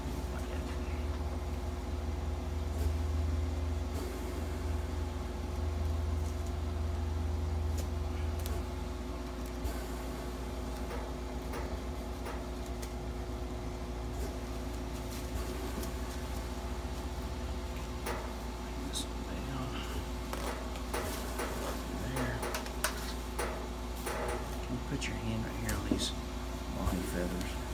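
A steady electrical hum from clinic equipment under soft handling noises. In the second half, a run of short clicks and crackles as adhesive bandage tape is pulled off the roll and wrapped around a turkey's wing.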